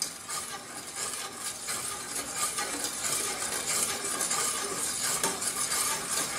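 A spoon stirring sugar into boiling water in a stainless steel saucepan: a steady swishing scrape with a few light clinks against the pan as the sugar dissolves.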